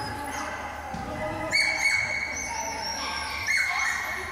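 A dog giving two high-pitched, drawn-out yelping barks, one about a second and a half in and another near the end.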